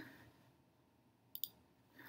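Computer mouse double-click: two sharp clicks in quick succession about a second and a half in, opening a file.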